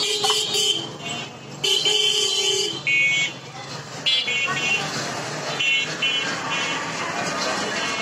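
Vehicle horns honking in street traffic: several flat, held toots in the first three seconds, over a steady background of traffic and street noise.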